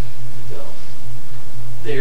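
Steady low hum of a home-video recording, with a faint short voice about half a second in and a high-pitched voice starting near the end.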